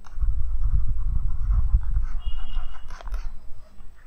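Breath blowing on a close headset microphone: an uneven low rush of air with no words, easing off near the end, and a faint click about three seconds in.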